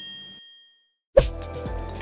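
A bright, bell-like chime sound effect rings out and fades within about half a second. After a brief silence, background music comes back in with a sharp hit about a second in.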